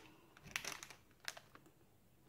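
Faint crinkling of a plastic sachet of chocolate drink mix being handled. A few short crinkles come about half a second in and once more just past a second.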